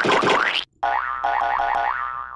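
Cartoon-style boing sound effects: a first springy burst that breaks off about half a second in, then a longer pitched boing that wobbles upward in pitch about four times a second.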